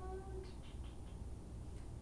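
A person's short, high-pitched whine, about half a second long at the start, over a steady low room hum.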